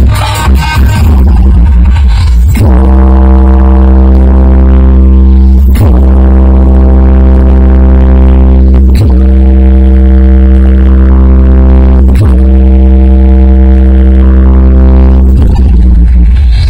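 Very loud electronic dance music from a DJ sound system. A dense beat plays for the first few seconds, then gives way to a long sustained droning note with heavy bass, broken by short drops about every three seconds. The beat returns near the end.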